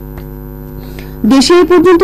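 Steady electrical mains hum in the broadcast audio, several fixed tones held level. A little past halfway through, the newsreader's voice comes back in over the hum.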